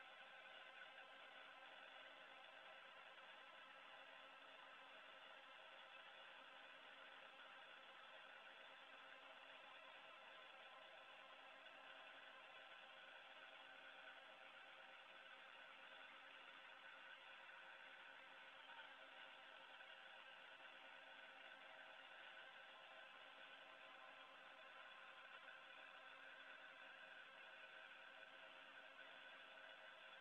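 Near silence: a faint, steady hum and hiss with several steady tones and no highs. This is the International Space Station's cabin background, where ventilation fans run constantly.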